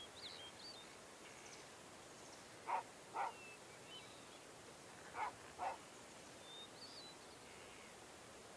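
Faint birdsong of short chirps and whistles, with a dog barking in two pairs of quick barks, about three and five and a half seconds in.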